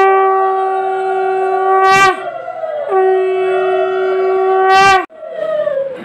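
Conch shell (shankha) blown in two long, steady blasts. Each ends with a brief upward lift in pitch, with a short break for breath about two seconds in, and the second blast stops about five seconds in.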